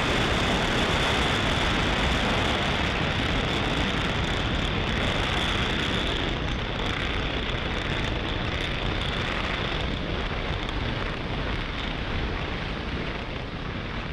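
Falcon 9 first stage's nine Merlin 1D engines firing during ascent: a steady, dense rumbling rush that slowly grows quieter.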